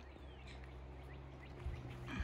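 A faint bird call: one thin whistle sliding downward in pitch, over a low steady outdoor background, with a soft footstep thud on the stone path near the end.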